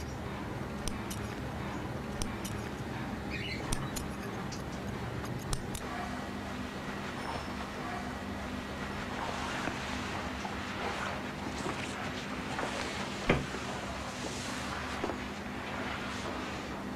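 Barber's small scissors snipping a few times while trimming nose hair, over a steady low hum of room tone. Then cloth rubbing as a towel wipes a face, with one sharp click near the end.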